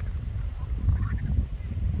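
Low, uneven rumbling noise, typical of wind buffeting an outdoor microphone, with a faint higher sound about a second in.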